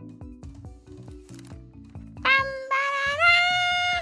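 Light cartoon background music with a bouncy rhythm of short low notes, then about two seconds in a loud held note that steps up in pitch twice, like a 'ta-da' flourish.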